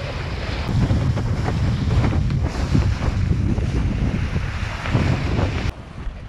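Wind buffeting the microphone and water rushing under a windsurf board planing across choppy water, with irregular thumps as the board hits the chop. The sound drops off suddenly near the end.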